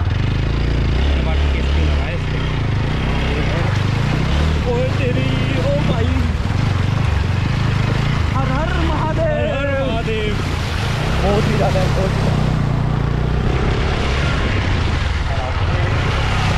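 Single-cylinder engine of a TVS Apache 160 motorcycle running at low speed with a steady low rumble as the bike rides through a shallow flowing river, the front wheel splashing through the water.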